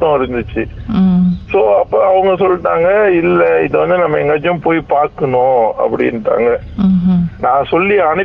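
Speech only: a person talking without pause, with no other sound.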